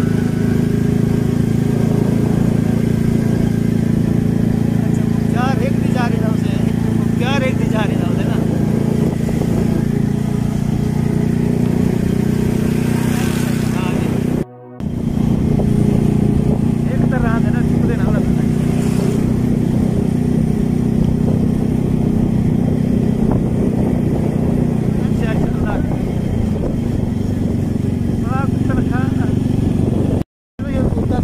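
Motorcycle engine running steadily at cruising speed, heard from the rider's seat while riding. The sound drops out for a moment about halfway through.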